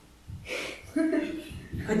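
A brief pause in speech. About half a second in there is a breath, then a short murmured vocal sound, and talk starts again near the end.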